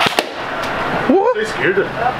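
Two sharp pops close together as an airsoft-style rifle is fired at balloons taped to a man, then a man's startled "Uh!".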